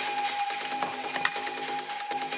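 Experimental electronic music: a steady held tone under a dense, irregular run of sharp clicks and scraping noise.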